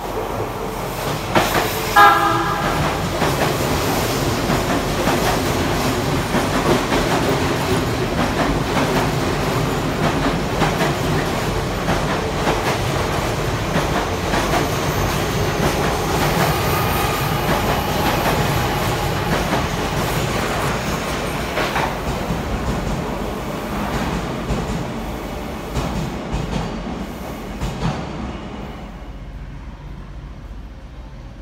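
Odakyu commuter train running through the station at speed without stopping: a short horn blast about two seconds in, then a long steady rumble of wheels on rail with repeated clicks from the rail joints, fading away near the end.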